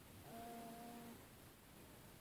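Near silence: room tone, with one faint, steady-pitched sound lasting under a second, starting about a third of a second in.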